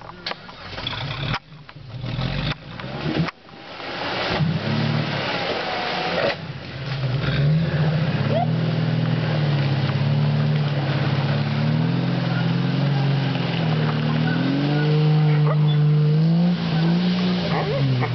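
Jeep Wrangler YJ engine revving under load as the Jeep, stuck in deep mud, tries to drive out. The first few seconds hold uneven short bursts and knocks; from about four seconds in the engine note is steady, its pitch rising and falling in long slow waves, loudest near the end.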